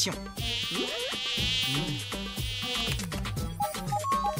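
Cartoon sound effect of a high, mosquito-like buzz for a small winged robot bug in flight. It sets in just after the start and fades after a couple of seconds, over a low bass line.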